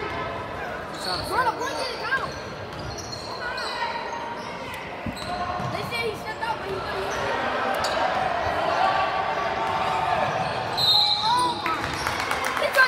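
A basketball being dribbled on a hardwood gym floor, with short sneaker squeaks scattered through it. Voices from the onlookers carry in the echoing gym.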